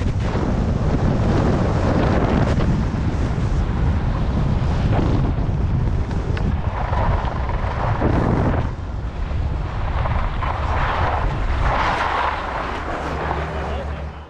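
Wind buffeting a body-worn action camera's microphone as a skier descends, a steady heavy rumble over the hiss and scrape of skis sliding and turning on packed snow, the scraping swelling in patches in the second half.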